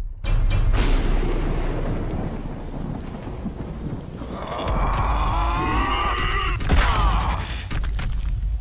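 Animated-film soundtrack: dramatic music over a low, thunder-like rumble. About halfway in a pitched sound with gliding tones joins it, and a sharp loud hit comes near the end.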